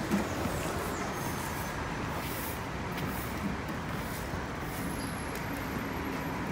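Steady city street traffic noise, with a departing articulated bus in the mix, and a short bump right at the start.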